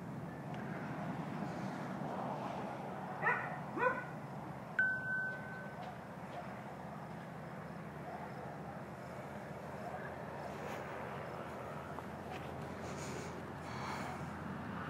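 Steady outdoor background noise, with two short rising chirps about three to four seconds in and a brief steady whistle-like tone about a second after them.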